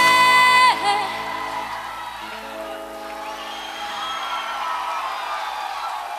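Live band music: a loud, long held note ends about a second in, then the band drops to quieter sustained chords with a crowd cheering and whooping.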